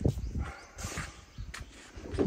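A few soft footsteps of sandals scuffing on brick paving, faint against a low outdoor background.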